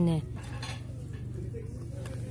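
Steady low hum of shop background noise with a few faint clinks and light clatter, as of plastic-packaged goods being handled.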